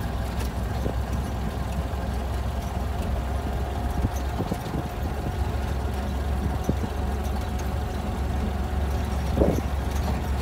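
Model A Ford's four-cylinder engine running steadily with a low drone as the car drives slowly, with occasional light knocks. A brief louder sound comes near the end.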